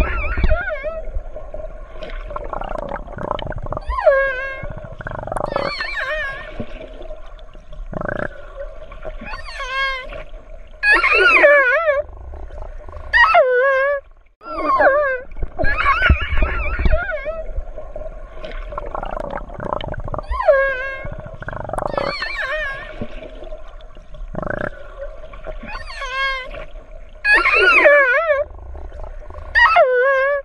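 Killer whales (orcas) calling underwater: a continuous series of short, wavering, high-pitched calls, many gliding up or down in pitch, overlapping one another every second or two, with a faint steady tone underneath.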